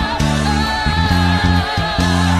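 Electric bass plucked with the fingers, playing a busy line of short low notes under a recorded disco-style worship song with a sung melody.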